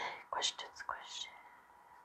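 Quiet whispered speech: a few short words in the first second or so, then quiet.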